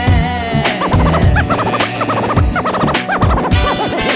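An R&B/hip-hop music mix with turntable scratching over the beat, quick rising and falling squiggles starting about a second in.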